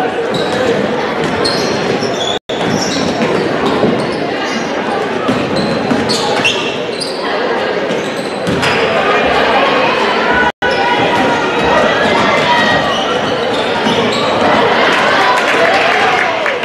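Gymnasium crowd at a basketball game, with many voices talking and calling out, a basketball being dribbled on the hardwood floor and short high squeaks from players' sneakers. The sound cuts out for an instant twice.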